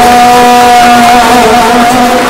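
A male singer holding one long note into a microphone, steady in pitch, which fades out near the end.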